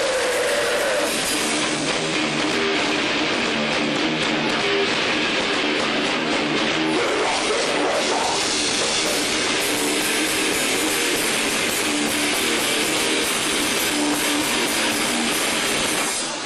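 Rock band playing live: electric guitars and a drum kit, steady and unbroken.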